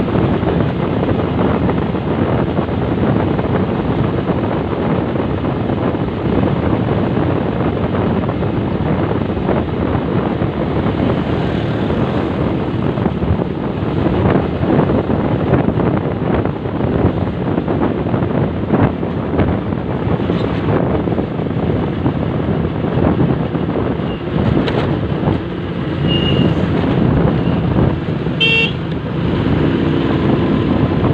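Motorcycle riding at road speed: steady engine drone mixed with heavy wind rush on the microphone. A short high beep, like a horn toot, sounds near the end.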